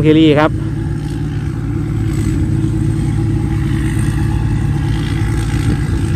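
Engine of a P. Charoen Phatthana 270 hp rice combine harvester running at a steady working speed while harvesting, heard as an even low drone.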